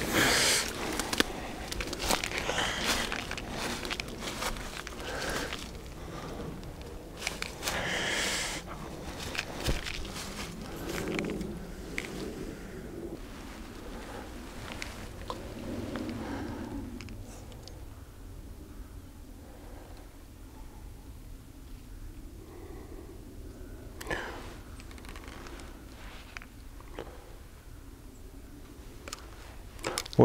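Rustling and crunching as a person pushes through dense riverbank undergrowth and dry vegetation on foot. It is busiest in the first dozen seconds, then quieter, with a few clicks later on.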